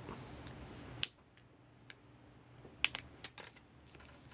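Small plastic and metal clicks as a Photon Freedom keychain light's battery compartment is pried open with a pen-cap tool. There is one sharp snap about a second in, then a cluster of clicks near three seconds with a brief metallic ring as the coin-cell battery is handled.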